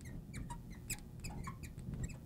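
Felt-tip marker squeaking faintly against the writing board in a quick, irregular run of short high squeaks as a few words are written.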